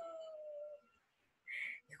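A human voice holding a high, drawn-out "oooh" exclamation that slides slightly down in pitch and stops a little under a second in. A short soft hiss follows about a second and a half in.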